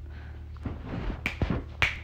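A few short sharp clicks in the second half, over a faint low steady hum.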